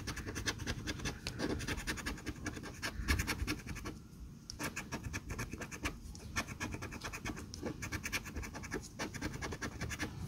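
A coin scraping the coating off a paper scratch-off lottery ticket in quick, rapid strokes, with a few short pauses.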